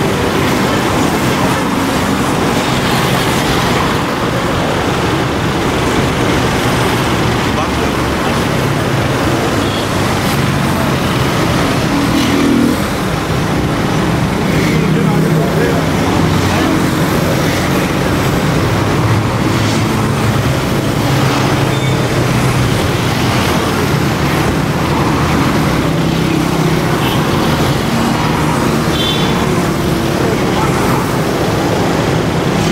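Steady road-traffic and vehicle noise with indistinct voices, holding an even level throughout.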